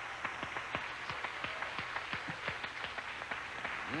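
Studio audience applauding, with separate claps standing out irregularly over the general clapping.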